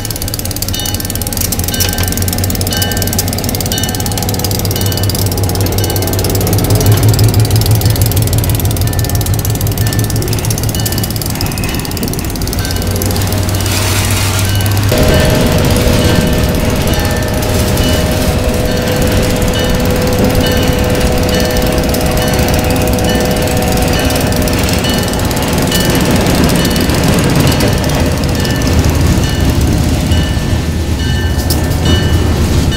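An EMD SW8 switcher's eight-cylinder 567 diesel running as it moves a cut of boxcars past along street track. Its bell rings at a steady, even pace. About halfway through, a higher steady hum joins the low engine note.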